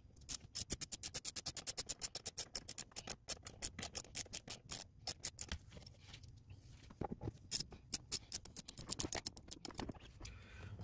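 A ratchet clicking rapidly as glove-box T15 Torx bolts are driven in: one long run of quick, even clicks, a pause of about two seconds, then a second run near the end.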